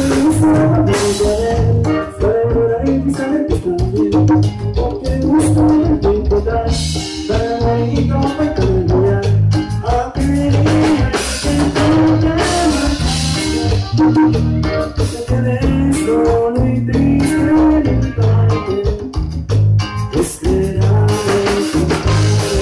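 A live Tejano band playing through its PA: button accordion, electric bass, congas, drum kit and guitar, with a steady beat and a melody line running over it.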